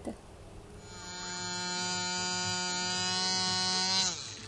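Electric tattoo machine buzzing at a steady pitch, fading in and growing louder, then dropping in pitch and stopping right at the end as it is switched off.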